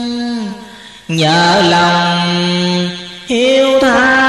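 A voice chanting Vietnamese Hòa Hảo Buddhist verse in long held notes: one note slides down and fades about half a second in, a lower note is held for nearly two seconds, and a higher note begins just after three seconds.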